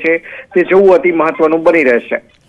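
Speech only: a man talking in Gujarati over a phone line, the voice thin and narrow-band.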